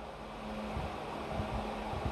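Steady background hiss with a faint low hum, with no distinct event: room tone.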